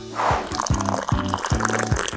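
Thick chocolate milkshake poured into a ceramic mug, a liquid filling sound, over background music with a steady bass line.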